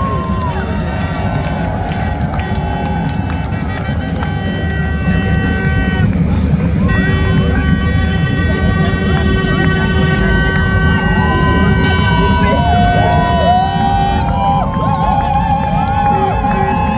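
Parade street sound: amplified music with long held notes over a steady bed of crowd and street noise. In the second half, voices whoop and call out above it.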